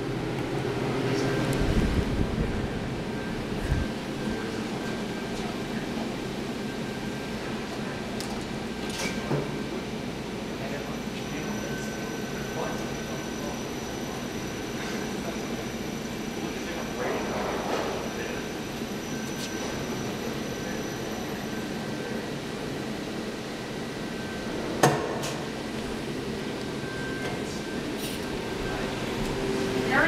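KONE EcoDisc machine-room-less elevator in use: a steady hum with a faint high whine through the middle, a low rumble about two seconds in after a floor button is pressed, and a few sharp knocks, the loudest about 25 seconds in.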